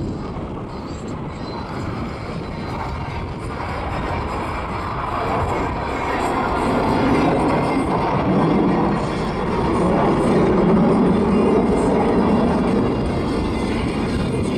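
Jet roar from a formation of eight T-50 jets, each powered by a single F404 turbofan, flying past: a broad rumble that builds through the first half and is loudest around ten to eleven seconds in, then eases slightly.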